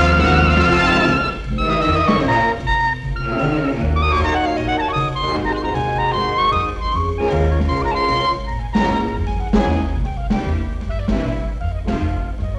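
Clarinet playing a busy, ornamented melody with vibrato on the held notes, over a jazz-style band with bass and drum kit. Sharp drum strokes stand out more in the second half.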